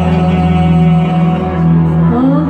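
Live metal band playing an instrumental passage, loud and steady, with electric guitars and bass holding sustained low notes.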